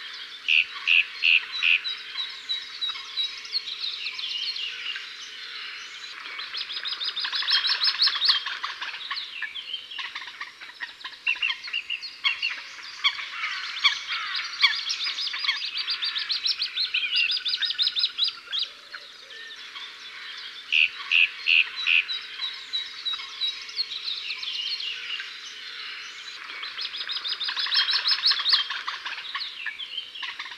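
Many songbirds chirping and trilling together, with short repeated notes and fast trills. The same run of calls comes round again about twenty seconds later, the sign of a looped birdsong ambience track.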